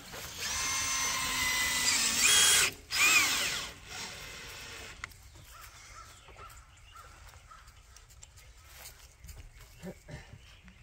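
Cordless drill driving a screw into a window frame: a steady motor whine for about two seconds that steps up in pitch near the end, a brief stop, then a shorter burst that rises and falls in speed. After about four seconds it goes quiet.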